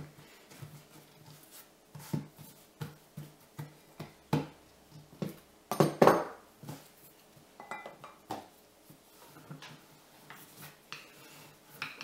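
Irregular soft knocks and taps of hands pressing and patting a lump of dough flat on a floured silicone mat over a wooden worktop, with a louder cluster of knocks about halfway through.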